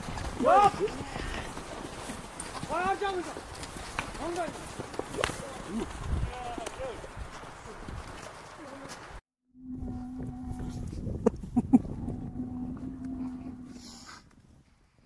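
Men shouting and calling out across an open field during a horseback game, several short rising-and-falling shouts. After a sudden cut, a cow mooing in long, steady, low calls, with a couple of sharp knocks in between.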